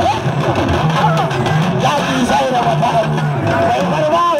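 Crowd of spectators shouting and calling over one another, many voices rising and falling at once.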